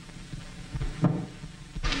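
A single click about a second in as a mains-powered table radio is switched on. The set stays silent because the house current is off.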